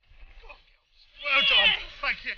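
A person's long, loud yell that falls in pitch about a second in, among shorter bits of voice.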